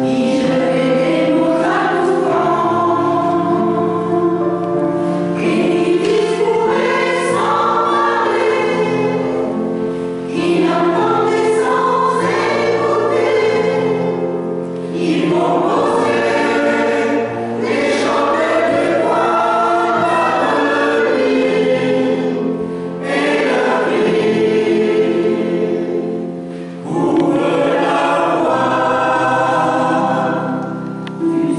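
Mixed choir of men and women singing in parts, holding sustained chords in long phrases with short breaks between them.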